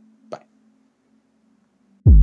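A single short pop about a third of a second in, over a faint hum that cuts off soon after, leaving dead silence.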